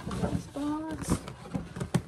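Rustling and light knocks of gift packaging being handled, with a brief wordless vocal sound about half a second in and a sharp click near the end.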